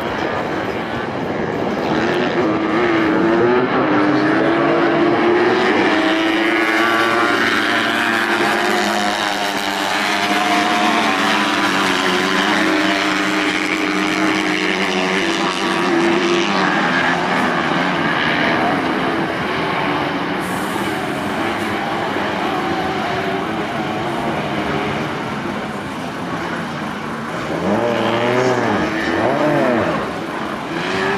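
Several 125 cc autocross buggies racing on a dirt track, their small high-revving engines rising and falling in pitch as they accelerate and lift off through the corners. Near the end one engine revs up and down sharply a few times.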